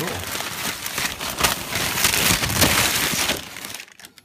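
Clear plastic packaging bag crinkling and rustling as it is handled, a dense crackle that dies away about three and a half seconds in.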